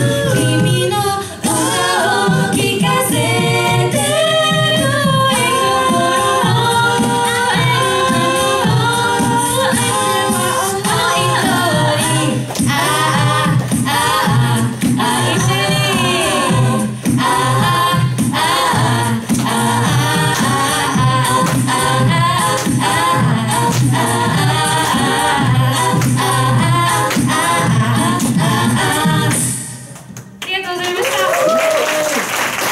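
Mixed-voice a cappella group singing a pop arrangement through microphones, several harmony parts over a sung bass line with a steady vocal-percussion beat. The song ends just at the close.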